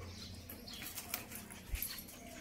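Pomeranian puppy making a few short, sharp yips about a second in and again near the end.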